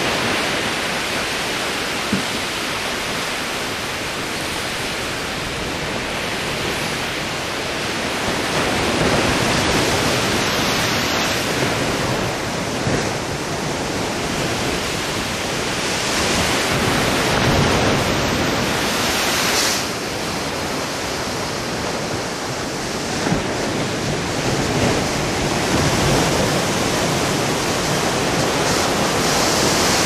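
Sea surf washing onto a sandy beach with wind, a steady rushing noise that swells and eases slowly.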